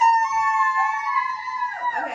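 Two children's voices holding one long, high sung note together, cut off with a drop in pitch near the end.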